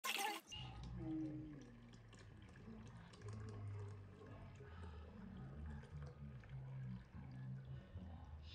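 Hibiscus drink poured in a thin stream from a jug into a tall glass, faintly running and splashing as the glass fills. A brief burst of noise comes right at the start.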